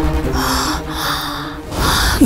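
Three sharp, breathy gasps in quick succession, each about half a second long.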